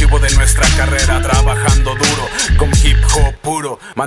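Hip hop track: a beat with heavy bass hits under voice-like sounds, with the beat briefly dropping out near the end.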